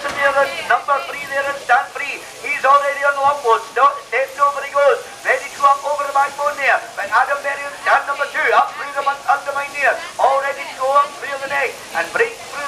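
Speech: a commentator's voice talking fast and without a break, thin in the low end as if through a loudspeaker.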